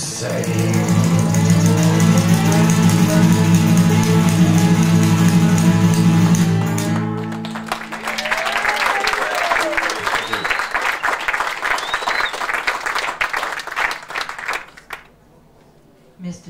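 The song's final note rings out, a male voice held over strummed acoustic guitar and mountain dulcimer, for about seven seconds. It fades into audience applause with a few cheers, which stops shortly before the end.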